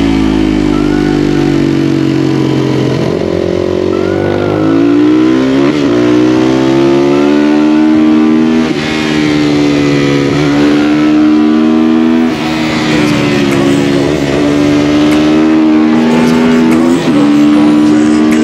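Supermoto motorcycle engine being ridden hard through curves, its pitch climbing under throttle and dropping back several times, with short breaks in the sound at gear changes.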